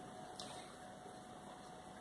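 Faint steady room tone picked up by a lapel microphone: a low even hiss with a thin steady hum underneath, and no distinct events.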